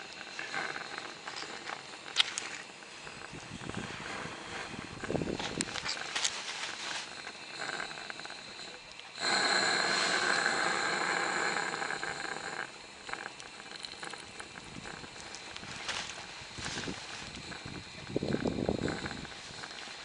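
Gas-fired live-steam garden-railway locomotive hissing steadily as it steams up, its burner and steam escaping. Near the middle a much louder hiss of steam lasts about three seconds, with a few small clicks from the engine being handled.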